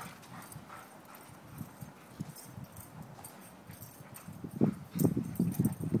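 A Bernese mountain dog and a smaller dog playing rough in snow: scuffling paws and dog noises. It is fairly quiet at first, then loud irregular bursts come in during the last second and a half.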